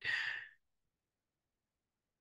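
A man's brief sigh, a half-second breath out, at the very start.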